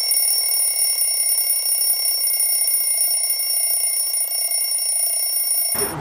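Steady, high-pitched electronic ringing tone, several pitches held together, that cuts off abruptly near the end.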